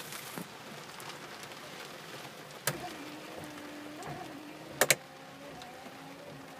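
Heavy rain hitting the car's roof and windshield, heard from inside the cabin. Sharp clicks come about two and a half and five seconds in, and a faint hum of the windshield wiper motor runs after the first click.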